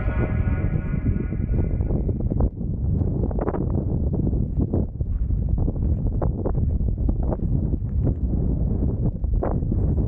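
Wind buffeting the camera's microphone as a steady low rumble, with background music fading out over the first two seconds. From about three seconds in come irregular footsteps on a dry dirt path.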